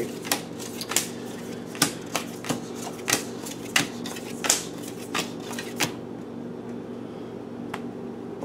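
Tarot cards being shuffled and handled by hand: irregular sharp card snaps and slaps that stop about six seconds in, over a steady low hum.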